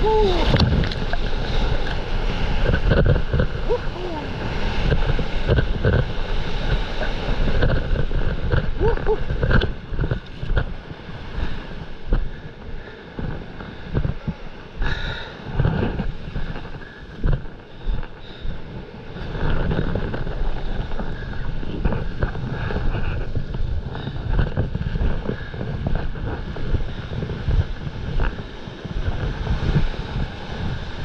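Wind rushing over the microphone with water churning and splashing as a stand-up paddleboard rides whitewater in to the beach. The rush is loud and steady for about the first ten seconds, then comes in uneven surges.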